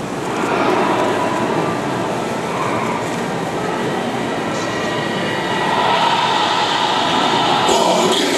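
Steady, loud rushing noise filling a large reverberant hall, swelling about half a second in and again near six seconds in. Near the end, sharp rhythmic hits begin as dance music kicks in.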